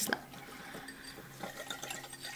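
Wire whisk beating cherry juice with cornstarch and sugar in a ceramic bowl: faint liquid swishing with a few light ticks.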